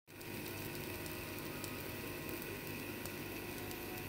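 A stuffed paratha cooking on a black iron tawa over a wood fire: a faint steady sizzle with a few soft ticks.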